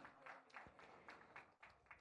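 Near silence with faint, scattered hand clapping from an audience.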